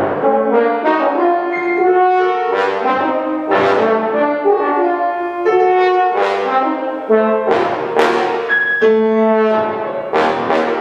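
A bass trombone playing a line of sustained and moving notes, accompanied by a grand piano striking chords at irregular intervals.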